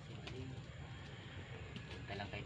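A dove cooing faintly over a low background hum, with a few faint ticks near the end.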